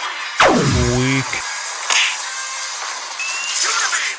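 Background music with cartoon fight sound effects: a loud downward-sweeping zap about half a second in that settles into a held low tone, then a short hit about two seconds in.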